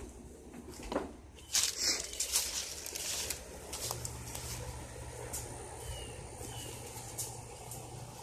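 Faint rustling and scattered light knocks of someone walking over grass, heaviest in the first few seconds, with two faint short bird chirps near the middle.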